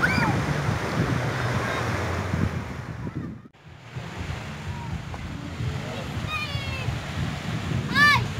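Surf washing on a beach with wind buffeting the microphone. The sound drops out sharply for a moment about halfway through, then comes back, with a few short high-pitched calls near the end.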